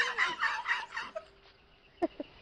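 Shrill, high-pitched laughter or shrieking in quick repeated bursts, dying away about a second in.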